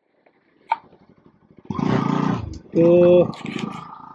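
About a second and a half of near silence with a single short click, then the wind and engine noise of a motorcycle being ridden, heard on the rider's camera microphone.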